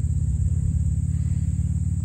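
An idling engine, a steady low rumble.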